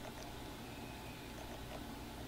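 Faint, steady room tone with a low hiss and no distinct sounds; the lipstick being applied is not clearly heard.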